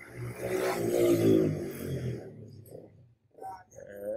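A man's voice making a drawn-out wordless sound, low-pitched and breathy, for about two seconds, followed by a short murmur near the end.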